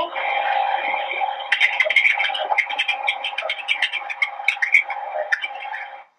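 Telephone-line audio from a recorded 911 emergency call: a steady line hiss and hum confined to the thin phone band, with muffled, indistinct crackling sounds from about a second and a half in.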